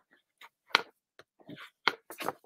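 A few short, separate taps and paper rustles from cream cardstock being folded and creased with a bone folder.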